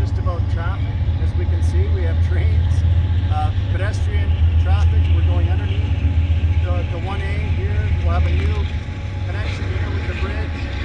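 People talking off to the side over a loud, steady low rumble that is the strongest sound throughout.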